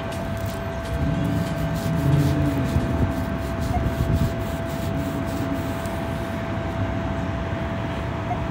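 Rubbing and handling noise against the phone's microphone while a dug coin is rubbed clean to read its date, over a faint steady tone.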